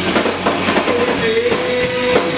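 Rock band playing live, with drum kit, electric guitar and bass guitar. A single note is held steady from about halfway through.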